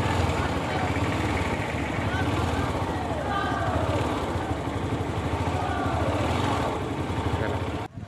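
Motorcycles and scooters of a rally passing at a distance, a steady low rumble with shouting voices over it.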